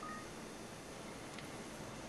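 Faint steady background hiss, with a short faint beep-like tone just after the start and a faint click near the end.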